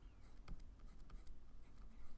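Faint scratching of a stylus writing on a drawing tablet as a word is handwritten, with a few light ticks from the pen tip.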